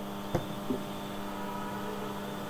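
Steady electrical mains hum from the altar microphone's sound system, several steady tones together, with two small clicks in the first second.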